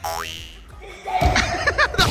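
A comedic "boing" sound effect, a short sharp tone rising quickly in pitch. About a second in, a louder burst of edited music and effects comes in.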